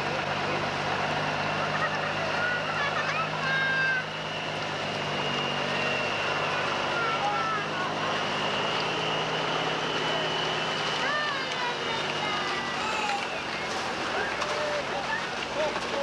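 Diesel engine of a cab-over tractor truck pulling a parade float, running steadily at low speed, with people's voices and calls around it.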